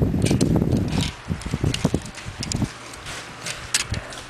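Rustling, rumbling noise from a handheld camera being moved about for about the first second, then quieter, with a few scattered light clicks and knocks.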